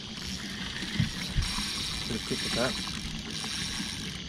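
A spinning reel is wound under load as a hooked fish is fought from a boat, heard as a steady whirring hiss over a low hum, with a couple of soft knocks about a second in.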